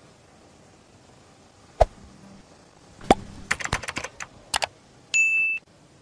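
Scattered sharp clicks: one, then another, then a quick run of several, then a pair. They are followed near the end by a short, high, steady electronic beep lasting about half a second.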